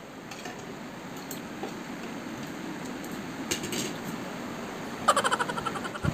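Spoon and fork clinking and scraping against a plate now and then, with a quick run of rattling clicks near the end, over steady background noise.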